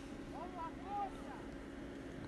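Faint, distant shouts of football players calling on the pitch, two or three short calls about half a second to a second in, over a steady low hum.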